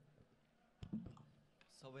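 Near silence, broken about a second in by a sharp click and a short thump on a handheld microphone, then a voice starts speaking near the end.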